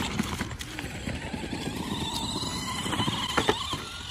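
Large 1/5-scale R/C Grave Digger monster truck with giant foam tires driving over grass, leaves and sidewalk, making an uneven rustling clatter. A couple of sharp knocks come about three and a half seconds in as it runs into a smaller R/C truck.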